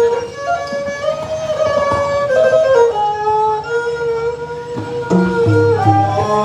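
Instrumental Khmer traditional wedding music played by a live ensemble: a melody of held and sliding notes over plucked strings.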